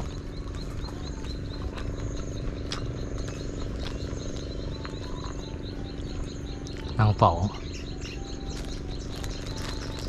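Insects chirping in a regular high pulse, a few times a second, with a few short higher chirps and a steady low hum underneath.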